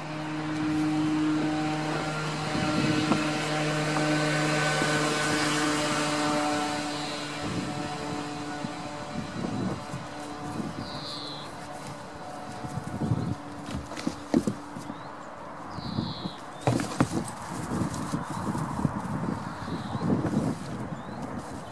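A steady engine hum runs for about the first seven seconds, then fades. From then on, goat hooves knock and clatter in irregular bursts on wooden boards.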